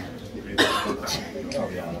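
A person coughing: a sudden loud cough about half a second in, then a weaker second one just after a second, over people talking.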